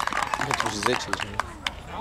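People talking in the background, with scattered short clicks.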